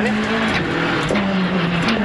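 Rally car engine running hard at speed, heard onboard over loud tyre and road noise. The engine note steps down slightly about half a second in and back up near the end.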